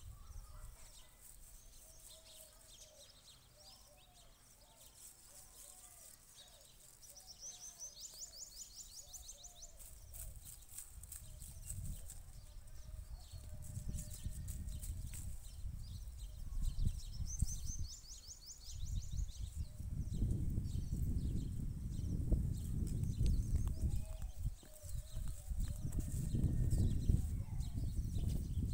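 Quiet rural field ambience: distant animal and bird calls, with two fast high-pitched bird trills. Low rumbling noise builds over the last third and becomes the loudest sound.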